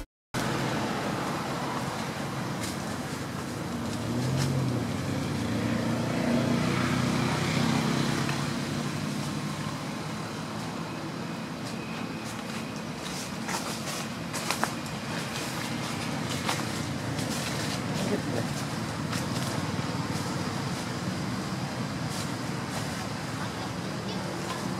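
Steady outdoor background noise, with faint voices and a few short sharp clicks around the middle.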